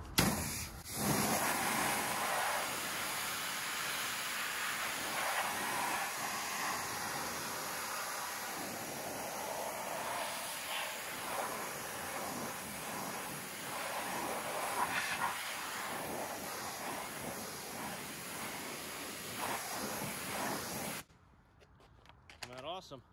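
Pressure washer jet spraying water onto a car wheel and tire, rinsing off wheel-cleaner foam: a steady rush of spray that stops suddenly about a second before the end.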